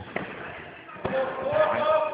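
Two sharp thuds of impacts in a full-contact martial arts bout, a faint one just after the start and a clearer one about a second in. A voice calls out and holds a steady note after the second thud.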